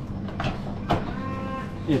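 A cow on the dairy farm mooing: one sustained call in the second half. Just before it comes a sharp click from the vending machine's delivery flap as the egg box is taken out.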